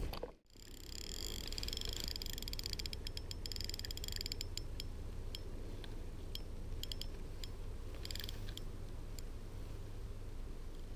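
Spinning fishing reel being cranked: a high whirring of the gears in the first few seconds and rapid bursts of clicks that come and go, over a steady low rumble.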